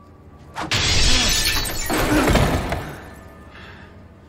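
A glass bottle thrown and smashing: a sudden loud shattering crash about half a second in, carrying on for about two seconds with a deep rumble in its second half, then fading.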